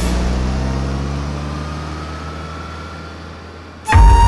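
A low steady rumble that fades away smoothly over nearly four seconds, with a faint thin rising tone in the middle. Just before the end, loud music cuts in suddenly.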